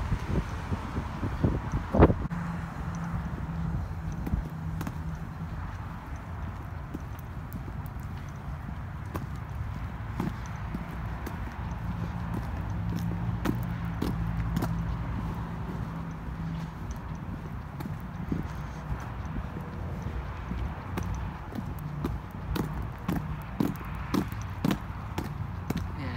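Footsteps walking on gritty pavement, a run of short uneven scuffs and taps over a low rumble of wind on the microphone, with one louder knock about two seconds in.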